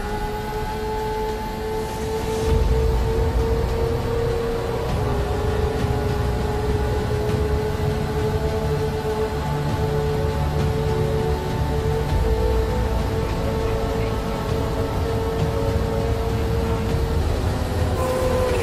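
Kawasaki Ninja H2R's supercharged 998 cc inline-four engine running at high revs in a top-speed run, a steady high whine that creeps up slightly in pitch over the first few seconds and then holds.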